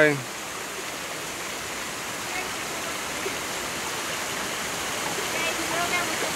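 Steady rush of a creek flowing over boulders.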